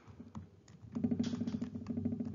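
Stylus writing on a tablet or pen display: a few separate taps, then from about a second in a fast, dense run of ticks and scratches as a stroke is drawn.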